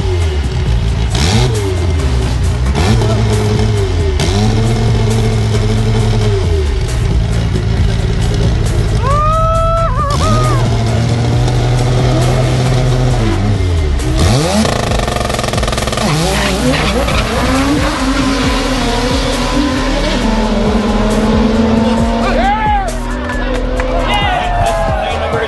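Drag car's engine at the start line, revving up and down, then held at steady high revs for a few seconds at a time. After about fourteen seconds the note changes, and near the end it settles into a long steady tone as the car runs down the strip.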